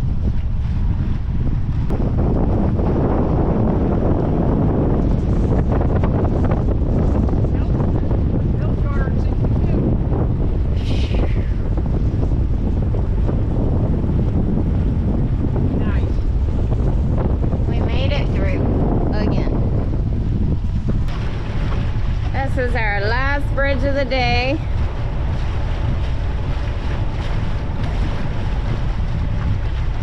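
Wind buffeting the microphone on a moving sailboat, a loud steady rumble. A brief wavering pitched sound rises over it a little past the middle.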